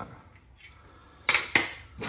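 Two sharp knocks of hard plastic on a wooden worktop, about a quarter second apart: a removed Systainer lid handle being set down.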